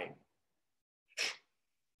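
A person's single short, sneeze-like burst of breath, about a second in.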